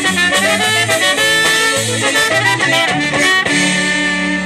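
Live Chicago-style polka band playing, with clarinet and trumpet over concertina, bass guitar and drums. The band lands on a held final chord near the end.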